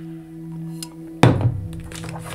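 A deck of tarot cards thudding once on a tabletop about a second in, over a steady, low drone of background music.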